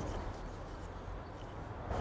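Quiet handling of a wooden serving mallet and marlin line on a rope, with a faint click near the start, over a low steady rumble.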